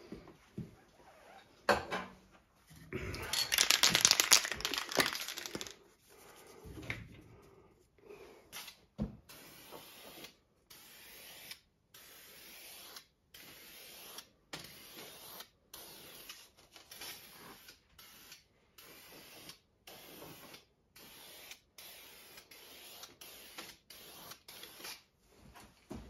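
Aerosol can of black primer spraying onto the bare metal back of an excavator seat. One long spray runs about three seconds in, followed from about nine seconds in by a string of short spray bursts, a little over one a second.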